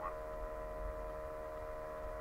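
Steady electrical hum: a few constant tones with a low rumble underneath.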